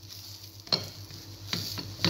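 A batter pancake sizzling in a frying pan, with three short scrapes of a plastic spatula against the pan, the first about two-thirds of a second in and two more near the end.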